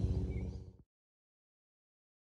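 Low outdoor background rumble for under a second, then it cuts off suddenly to silence.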